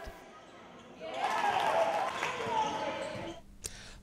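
Live game sound of a basketball match in a sports hall: a ball bouncing and players' voices. It starts about a second in and dies away just before the end.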